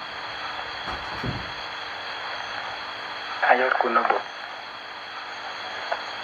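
Steady hiss and faint hum of an old sermon recording in a pause of the talk, with a brief low rumble about a second in. A short spoken phrase comes a little past the middle.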